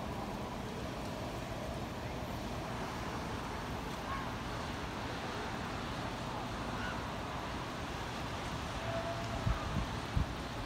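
Steady wind blowing across the microphone over the distant wash of surf breaking on the beach. A few harder gusts buffet the microphone near the end.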